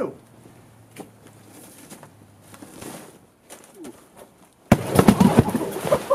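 Near-quiet with a few faint clicks. Then, about three-quarters of the way in, a sudden loud crash, followed by a dense run of knocks and rattles.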